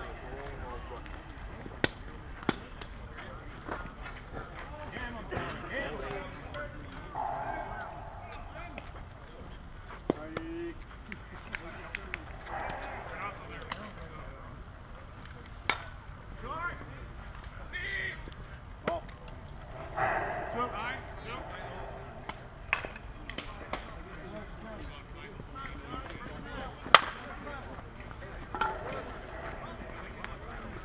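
Players' voices and calls across a softball field, with scattered sharp clicks and knocks. Near the end comes a single sharp crack, the loudest sound, as a softball bat hits the ball.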